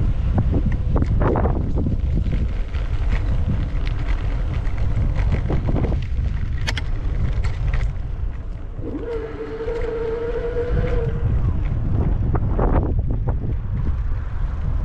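Wind buffeting an action camera's microphone while riding, a loud, steady low rumble. A steady pitched tone sounds for about two seconds just past the middle, over a few scattered clicks.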